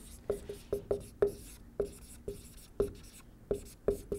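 Dry-erase marker writing on a whiteboard: about a dozen short squeaks and taps, one for each stroke of the pen.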